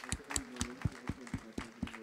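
Thin applause: a few hands clapping, about four claps a second, tailing off toward the end.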